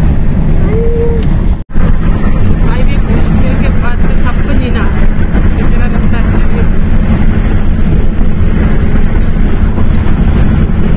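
Car cabin noise while driving at speed: a loud, steady low rumble of road and engine, with faint voices. The sound cuts out for an instant a little under two seconds in.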